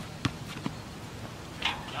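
Basketball dribbled on a hard outdoor court: two bounces in the first second, the second fainter, then the dribbling stops as the ball is shot. A voice comes in near the end.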